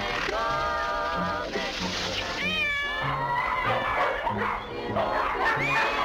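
Cats meowing in long, drawn-out cries over dance-band music with a repeating bass line; about halfway through one cry slides up and down in pitch.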